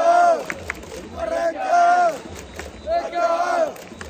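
Baseball cheering section chanting in unison, nearby male voices loudest: a drawn-out shouted call repeated about every second and a half.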